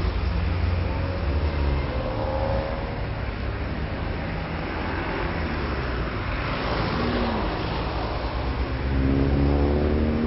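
Street traffic: car engines running and vehicles passing over a steady low rumble, with a louder engine tone near the end.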